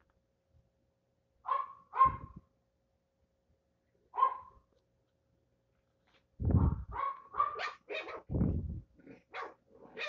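Two small dogs barking at each other in play: three short single barks, then from about six seconds a rapid, loud flurry of barks.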